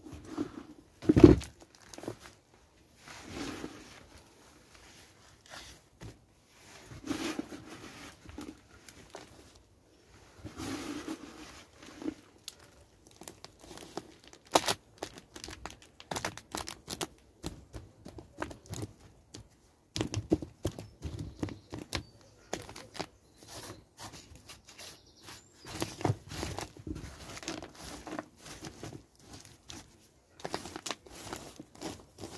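Gloved hands pressing compost down into plastic seed module trays and scraping off the excess: irregular rustling and scraping with light clicks, and a louder knock about a second in.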